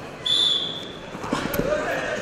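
A referee's whistle blows one short, steady, high blast about a quarter second in. Near the end, dull thuds on the wrestling mat and shouting voices.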